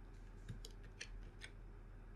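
Three faint clicks of a computer mouse and keyboard, about half a second apart, over a low steady hum.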